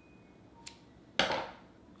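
Scissors cutting through a soft plastic stick bait: a faint click a little past half a second in, then the louder snip of the cut a little past one second, fading quickly.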